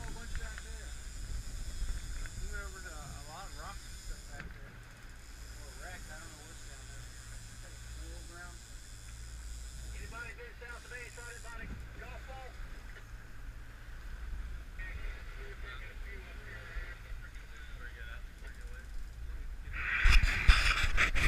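Twin 225 hp outboard motors running as the boat moves, a steady low drone under a hiss of wind and water. Faint voices come and go in the background.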